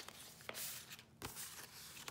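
Faint rustling and sliding of paper and card as journal pages and tucked-in cards are handled, in two short spells with a soft knock between them.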